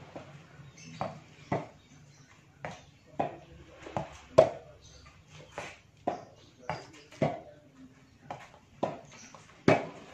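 Tennis rackets hitting a soft, low-bounce exercise ball back and forth, with the ball bouncing on concrete: a rally of sharp knocks, about fifteen in all, one every half second or so.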